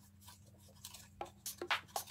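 Stiff black cardstock being flexed and flipped by hand: a few short paper rustles and taps, coming more often in the second half, over a faint steady hum.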